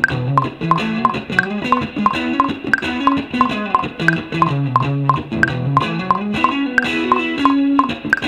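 Logic Pro metronome clicking about three times a second, with a higher accented click every fourth beat, over a looped guitar solo playing a low melodic line. The guitar playing is not lined up with the metronome clicks.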